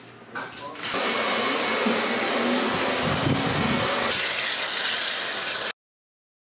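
A steady rushing hiss from a hair-styling tool worked on a wig. It turns brighter about four seconds in and cuts off abruptly just before the end.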